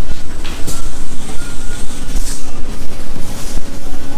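Loud, steady rumbling and rattling of production machinery, with scattered clicks.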